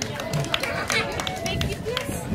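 Several people chattering outdoors, with scattered light clicks and knocks; no music is playing.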